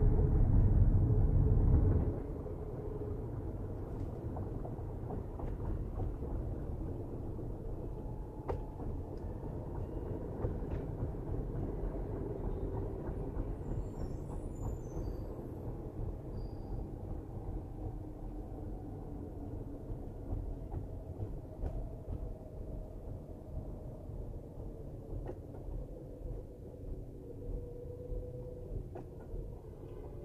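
A car driving on city streets, heard from inside the cabin: a steady low rumble of engine and tyres on the road. The rumble is louder for the first two seconds, then drops off suddenly.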